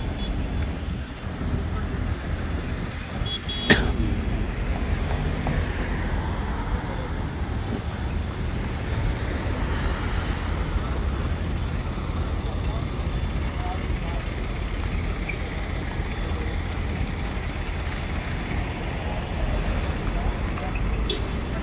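Busy city street ambience: a steady low rumble of road traffic with indistinct voices. A single sharp knock stands out about four seconds in.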